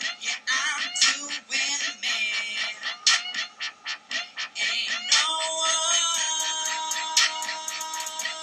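Recorded R&B-pop song playing: a male voice singing over a beat with sharp regular hits. About five seconds in, the singing gives way to a long held note.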